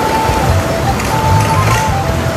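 Background music with a steady melody, over loud engine and churning water noise from a longtail boat running past.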